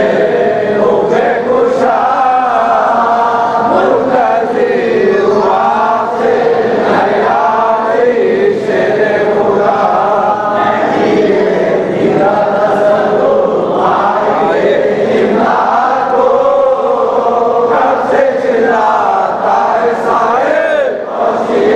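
A group of men chanting a munajat, a devotional prayer of supplication, together in a continuous melodic chant without pauses.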